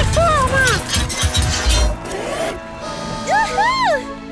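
Cartoon soundtrack: clattering, metallic-sounding effects over a low rumble for about the first two seconds as the character morphs into a crane, with background music and squeaky rising-and-falling vocal glides, the loudest near the end.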